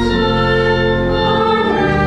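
Church organ holding sustained chords under voices singing a hymn, the notes changing to a new chord twice.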